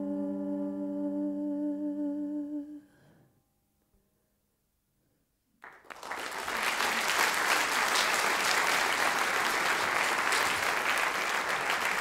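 The song's last held chord rings on and fades away about three seconds in. After a couple of seconds of silence, applause starts suddenly a little before the six-second mark, goes on evenly, and cuts off abruptly at the end.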